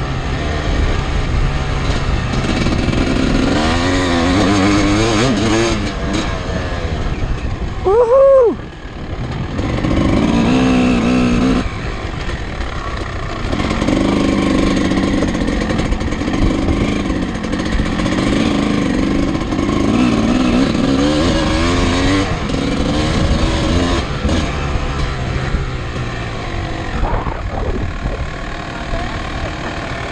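Vintage dirt bike's engine revving up and down as it is ridden over a dirt motocross course, with one sharp rev about eight seconds in, the loudest moment. The engine is a little quieter near the end.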